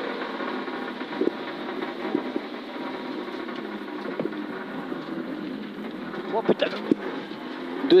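Subaru Impreza N4 rally car's turbocharged flat-four engine and tyre noise on a wet road, heard from inside the cabin while driving hard. A few short knocks run through it, with a brief louder burst a little before the end.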